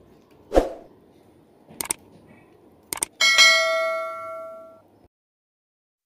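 A steel spoon knocking against a small steel frying pan: a knock, a couple of light clicks, then a clear metallic clang about three seconds in that rings on and fades over about a second and a half.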